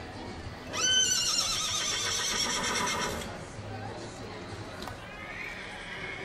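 A horse whinnying: one long quavering call starting about a second in and lasting about two seconds, then a fainter, shorter rising call near the end.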